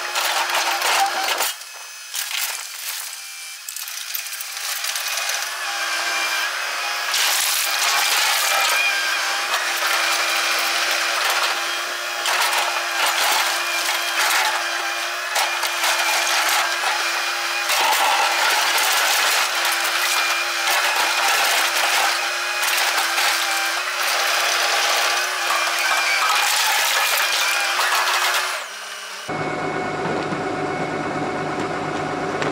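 Link-Belt 2800 excavator digging into a pile of blasted rock: the bucket scrapes and loose flat rock clatters and slides, over a steady tone from the machine. The sound drops for a couple of seconds near the start and changes abruptly to a steadier hum just before the end.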